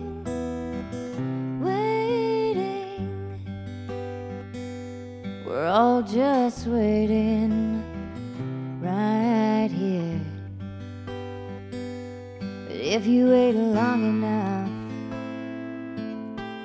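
Acoustic guitar played live, holding steady chords, while a woman sings several phrases with pauses between them.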